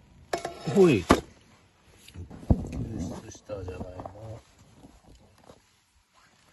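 Handling a foil-baked potato and a stainless steel cup: rustling foil, a sharp clink about a second in and a heavier knock about two and a half seconds in. A short voice sound falling in pitch comes just before the first clink, and a murmured voice around the four-second mark.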